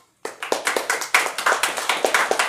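A small audience applauding, the clapping starting a moment in and continuing as quick, dense applause.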